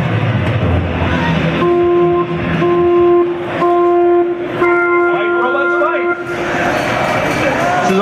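Arena start signal: three shorter electronic beeps and a longer fourth one, all on the same pitch, counting down the start of a robot-combat match. Crowd chatter runs underneath, and a louder spell of noise follows the last tone.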